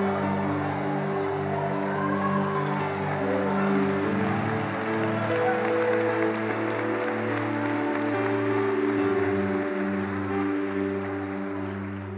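Soft sustained keyboard chords held under the pause, moving to a new chord about four seconds in and again about nine seconds in, with a congregation clapping throughout.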